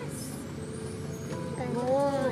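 Steady road noise inside a moving car's cabin, in a gap between sung lines; a girl's voice comes back in near the end.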